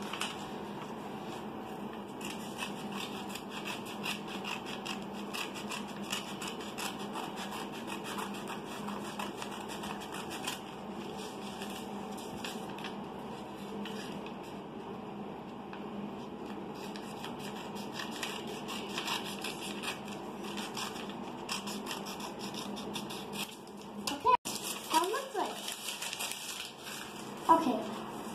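Scissors snipping through paper, many short irregular snips and paper rustles over a steady background hum, with a brief voice-like sound near the end.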